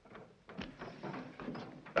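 Low background noise with a few faint, soft knocks.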